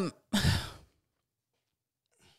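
A person sighs: one short breath out close to the microphone, about half a second long, just after the tail of a spoken "um".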